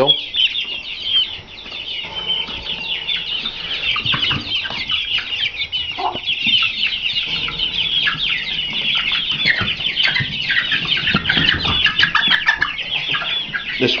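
A pen of young game chickens (growing Shamo, Asil and Thai game chicks) peeping and cheeping continuously. It is a dense, overlapping chorus of short, high chirps with no let-up.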